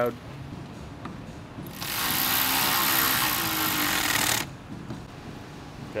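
Cordless power driver spinning a T30 Torx fastener into a radiator fan shroud: a steady whirr starting about two seconds in, lasting a little over two seconds and cutting off abruptly.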